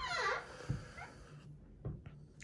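A wooden interior door's hinge creaks as the door swings open: one short falling squeak at the start, then a few soft low thumps.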